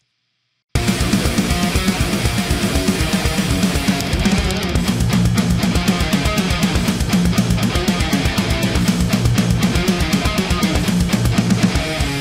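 Distorted high-gain electric guitar from a black Epiphone single-cut, playing a fast palm-muted metal rhythm riff. It starts about a second in, and the picking becomes faster and denser a third of the way through.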